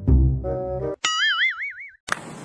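Comedy sound effects added in editing: a short burst of music with deep bass, then about a second in a cartoon 'boing' tone whose pitch wobbles up and down about four times before cutting off.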